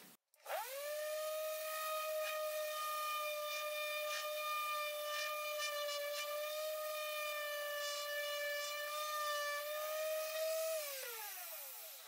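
Hikoki SV13YA random orbital sander starting with a rising whine, running at a steady pitch while sanding a small wooden block tilted onto one edge, which digs a shallow dip into the wood, then switched off near the end and winding down with a falling whine.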